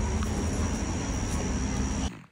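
Steady outdoor background noise: a low rumble with a thin, steady high whine above it.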